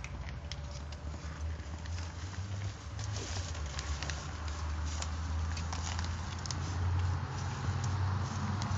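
Footsteps crunching over loose dirt and debris, a dense run of small irregular crackles and clicks, over a steady low rumble on the microphone.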